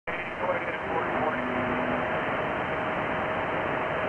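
Received static and hiss from an HF radio transceiver's speaker with no strong station on frequency, a faint steady whistle of a carrier heterodyne running through it and faint distant voices coming through early on.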